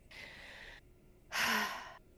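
A person breathing out twice, a faint breath and then a louder sigh about a second later that ends with a brief sound of voice.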